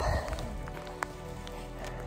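Quiet background music with a steady sustained tone, with a few faint light ticks over it.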